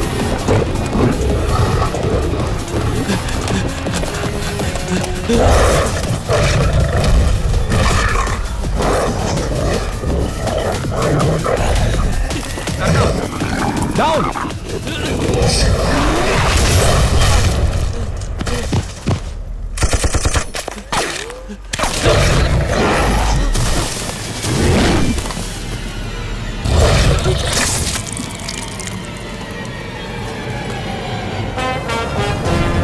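Action-film soundtrack: loud dramatic background music mixed with bursts of gunfire and booms, with the sound dropping away briefly about twenty seconds in.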